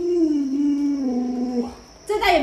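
An adult Alaskan Malamute howling: one long, steady howl that slowly sinks in pitch and stops shortly before the end.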